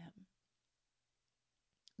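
Near silence: quiet room tone, with a faint click just before the voice resumes.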